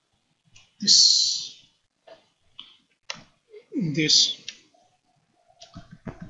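A man's voice saying "this" twice, hesitantly, with a few faint short clicks in the pause between.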